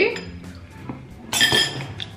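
Metal spoon scraping and clinking against a glass bowl as the last cereal is scooped out, ending with one bright ringing clink about one and a half seconds in as the spoon is set down in the bowl.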